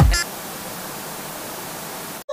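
Electronic dance music breaks off just after the start, leaving a steady, even hiss of static noise: a glitch-transition sound effect.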